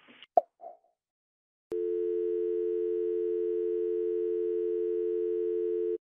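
A telephone line clicks as the call is hung up. After a moment of silence a steady telephone dial tone comes on and holds.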